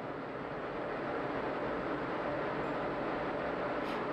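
Steady, even hiss and rumble of ambient launch-pad audio during the final countdown, with the rocket's engines not yet lit.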